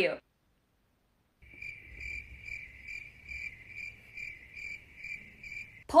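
Cricket chirping sound effect: after a second and a half of dead silence, a steady run of high chirps about two and a half a second, over a faint low rumble. This is the stock comic cue for an awkward silence.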